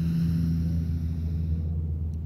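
A long, deep breath drawn in through the nose, ending just before the breath is held. Under it runs a steady low rumble.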